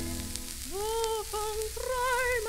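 Quiet orchestral passage of a 1933 tango played from a 78 rpm shellac record, with the record's surface crackle plainly audible. A long held note with vibrato stops right at the start, and after a brief lull a soft melody of short separate notes begins.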